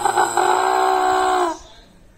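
A young man's long wailing cry to his mother ("Amma"), one high note held steady that stops about a second and a half in.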